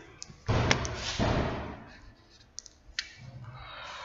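Felt-tip marker writing on a whiteboard: a scratchy rubbing stroke about half a second in, then a few small sharp clicks.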